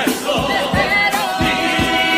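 Andalusian carnival comparsa chorus singing in harmony over a steady beat.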